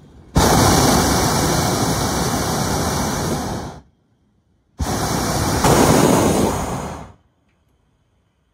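Hot air balloon's propane burner firing in two long blasts, about three and a half seconds and then about two and a half seconds, with a second's gap between; the second blast grows louder partway through.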